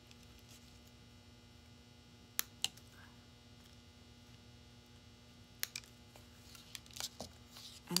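Small hand snippers clipping sprigs of artificial greenery: two sharp snips about two and a half seconds in, then a few lighter clicks near the end. A steady electrical hum lies underneath.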